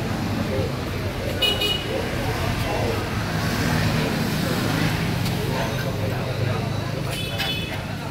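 Steady street traffic rumble with two short horn toots, one about a second and a half in and one near the end.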